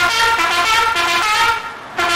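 A bugle sounding a military honours call: a run of loud held notes, the pitch changing every third of a second or so, with a brief break near the end.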